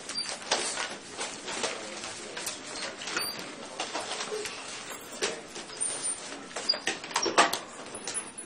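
Room noise of a class breaking up: scattered knocks, clicks and rustling as people pack up and move about, with faint voices in the background.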